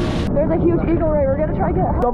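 Background music with a heavy beat cuts off abruptly just after the start; then voices talking, with a steady low rumble underneath.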